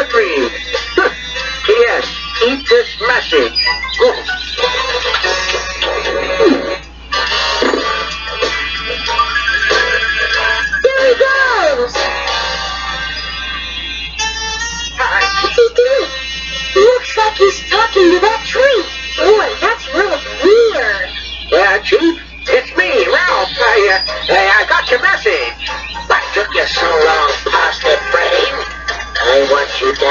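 A VHS cartoon soundtrack played through a small TV's speaker: music with singing and talking voices, over a steady low hum.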